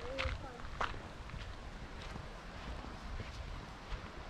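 Quiet outdoor background with a steady low rumble, a brief voice right at the start and a couple of sharp clicks within the first second.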